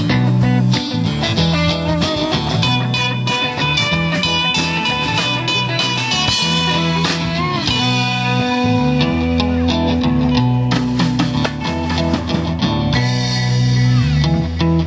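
A funk band playing live: two guitars, one of them electric, over a drum kit, in an instrumental passage with no singing.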